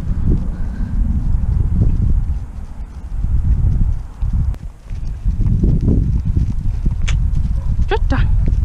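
A pony walking on a lunge circle on grass, its hoofbeats soft and irregular, under a continuous loud low rumble.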